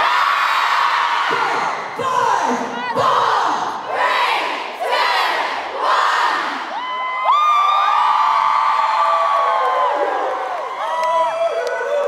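Concert audience screaming and cheering, many high-pitched screams overlapping, with several long held screams from about seven seconds in.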